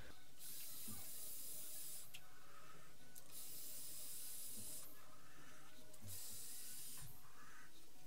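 Council of Vapor Mini Volt 40-watt mod with a low-profile RDA, fired at 40 watts while being drawn on: the atomiser hisses as air is pulled through it and the coil sizzles, in three stretches of a second or two each.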